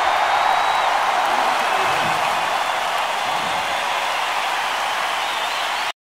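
Steady noise without pitch, like a hiss, that cuts off suddenly at the very end of the track.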